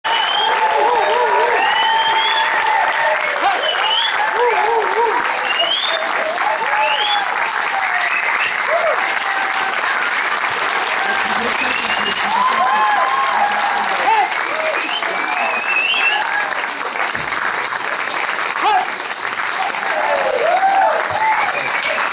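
Applause from audience and performers, steady throughout, with cheers and whoops rising over the clapping.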